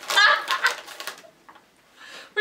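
High-pitched, squealing laughter from two young women for about the first second, then dying away.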